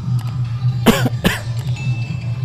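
Two short coughs about a second apart, over a steady low hum.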